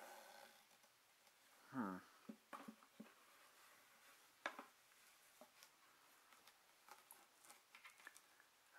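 Near silence with a few faint, scattered clicks and taps of hands handling the parts of a flat-pack dog stairs kit; the sharpest click comes about four and a half seconds in.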